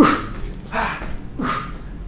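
A man's short, forceful grunting exhalations, three of them about three-quarters of a second apart, in rhythm with high-knee running in place during a hard interval.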